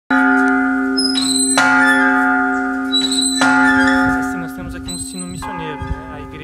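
A large church bell struck three times by its clapper, about a second and a half apart, each stroke ringing on in a long, slowly fading hum. A man's voice comes in over the dying ring near the end.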